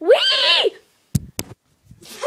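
A child's high-pitched squeal, its pitch rising and then falling, lasting about half a second; a little later two sharp knocks follow close together.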